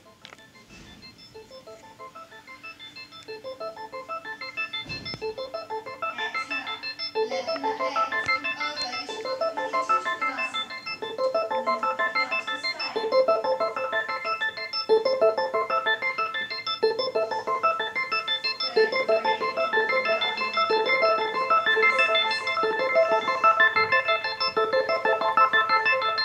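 Electronic music of sustained organ-like keyboard chords with a fast pulsing tremolo, the chord changing about every two seconds. It fades in gradually over roughly the first twelve seconds.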